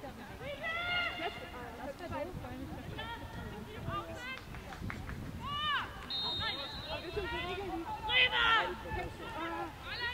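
Voices shouting short calls across an open rugby pitch during play, with a louder burst of shouting about eight seconds in.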